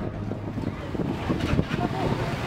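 Motorcycle engines running at a standstill on the street, a low steady rumble buffeted by wind on the microphone.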